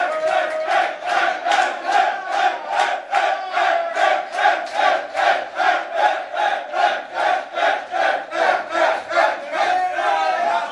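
A group of young men chanting together in unison, shouting on a fast steady beat of about two and a half shouts a second.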